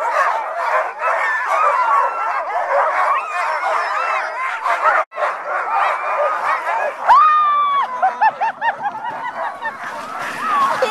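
A team of sled dogs barking, yelping and howling all at once in a dense, loud chorus: the excited clamour of huskies eager to run. About seven seconds in, one long high call stands out, and then the chorus thins to scattered yips.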